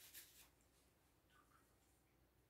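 Near silence: room tone, with only a faint, brief sound about a second and a half in.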